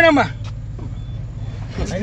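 A vehicle engine idling with a steady low hum, and two faint short high beeps in the middle. A voice is cut off just after the start and another begins near the end.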